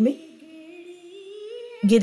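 Soft humming: one long held note that slowly rises in pitch and wavers slightly, quieter than the spoken words at either end.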